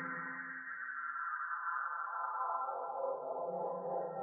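Live electronic music from a Csound and Max/MSP setup: a dense cluster of sustained synthetic tones, its upper notes slowly sinking and thinning, then swelling again about three seconds in.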